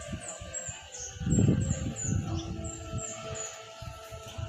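A bird calling over and over with short, high, downward-sliding chirps, about three a second, over a low rumble that swells into a loud low blast about a second and a half in.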